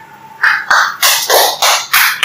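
A crow cawing: a rapid series of loud, harsh caws, about three a second, starting about half a second in.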